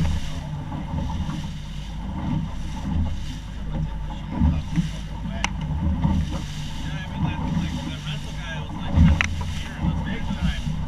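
Motorboat running across a choppy bay: a steady low motor drone under wind buffeting the microphone, with the hull thumping on the chop now and then, loudest near the start and about nine seconds in. A single sharp click about halfway through.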